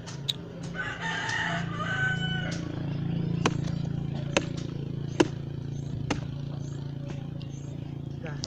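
A rooster crows once, a long call in the first couple of seconds. Then come four sharp chops, a little under a second apart, as a machete strikes the fibrous trunk of a felled coconut palm to cut out the heart of palm.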